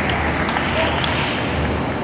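Table tennis ball clicking a few times off the bats and the table during a rally, over a steady murmur of voices and hall noise.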